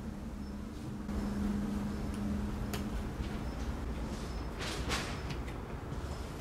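Cardboard shoebox being cut with metal snips and its lid handled: a sharp click near the middle and a brief crackle of cardboard about five seconds in, over a low steady hum during the first half.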